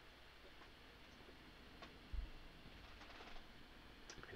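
Near silence: room tone, with a few faint clicks and a short, soft low thump about two seconds in.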